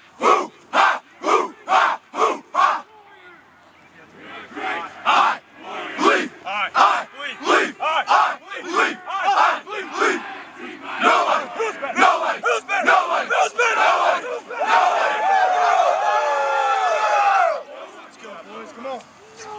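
Rugby team shouting a pre-match war cry in a huddle. A rhythmic chant, about two shouts a second, stops about three seconds in. After a short lull, overlapping shouts build into one long group yell that cuts off suddenly near the end.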